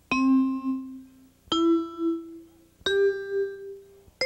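Three chime-like musical notes, each struck and ringing out before the next, about a second and a half apart and rising in pitch step by step like an arpeggio.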